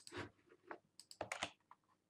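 Faint computer keyboard and mouse clicks: about ten short, irregular clicks.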